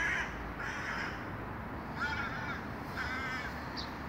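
Crow cawing: four harsh calls, in two pairs about two seconds apart.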